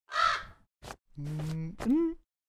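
A crow caws once, harshly, at the start. This is followed by a man's brief held hum and a rising vocal "hm?" near the end.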